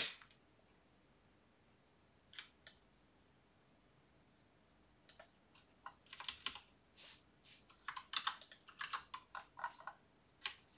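Computer keyboard typing and clicking: two single clicks a few seconds apart, then an irregular run of quick keystrokes through the second half.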